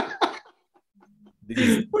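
A man coughs once, a short harsh burst about one and a half seconds in, after the tail of a laugh.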